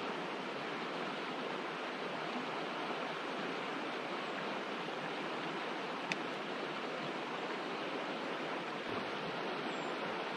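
Shallow, rocky river flowing over stones: a steady rush of moving water, with one brief click about six seconds in.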